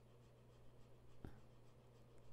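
Near silence: room tone with a low steady hum and one faint click a little past the middle.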